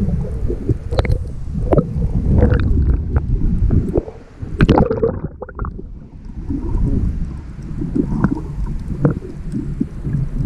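Muffled water sloshing and gurgling around a camera held just under the sea's surface, a steady low rumble with a few short, sharp splashes, the loudest nearly five seconds in.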